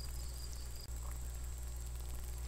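Steady low electrical hum with a faint hiss and a thin high steady tone, with no distinct event; it briefly drops out a little under a second in.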